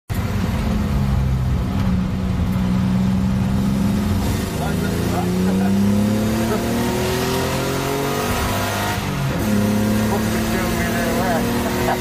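Car engine heard from inside the cabin on track: a steady note at first, then climbing in pitch under acceleration for several seconds before dropping sharply about nine and a half seconds in to a lower steady note.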